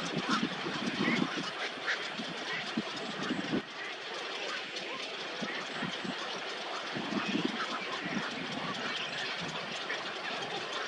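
A crowded nesting colony of large waterbirds, many birds calling at once: clusters of short low calls and scattered higher chirps over a steady background hiss.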